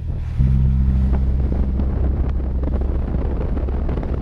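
Water-tanker truck's engine running, a steady low drone that gets louder about half a second in, with some wind on the microphone.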